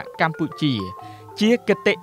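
A voice over background music, with sustained bell-like tones held under it and a short pause in the voice about a second in.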